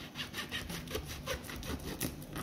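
Kitchen knife sawing back and forth through a cooked, rolled taro-leaf roll, rasping against the wooden chopping board in quick repeated strokes.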